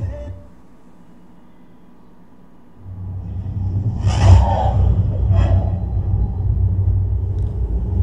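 Deep cinematic rumble from a studio logo intro, starting about three seconds in, with two whooshes over it around the middle.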